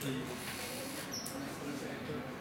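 Indistinct talking, too unclear for words, with a brief high squeak a little over a second in.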